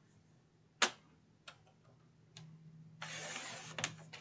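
A sharp click about a second in and a few faint taps as paper is handled on a paper trimmer. Near the end comes a hiss of about a second: the trimmer's sliding blade cutting through the printed paper in one stroke, followed by a couple of clicks.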